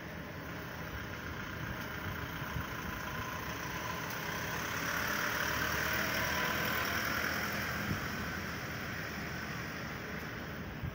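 A delivery truck drives past close by; its engine and tyre noise builds to its loudest a little past the middle and then fades. A steady engine hum runs underneath.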